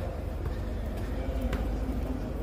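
Steady low rumble from a handheld phone carried while walking up steps into a tunnel, with faint voices behind it and a single knock about one and a half seconds in.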